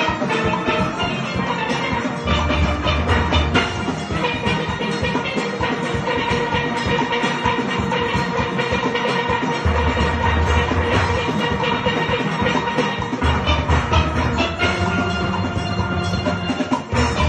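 Steel pan band playing: many pans struck in quick, ringing notes, with a deep bass line from the bass pans coming in and dropping out several times.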